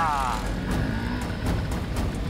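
Motor scooter engine running as it rides along, over a steady hiss of rain. A short falling swoosh effect opens it.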